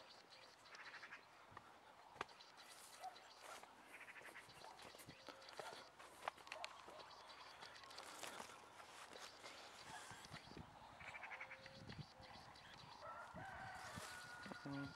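Faint rustling of peach-tree leaves and branches brushing past as someone walks through them, with chickens calling faintly in the distance several times.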